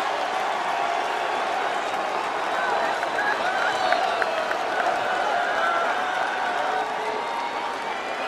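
Large arena crowd cheering and applauding steadily, with scattered shouts over the din; it eases slightly near the end.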